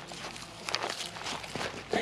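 Fabric first aid pouches being handled and set down on a log, rustling and scuffing with a few soft knocks.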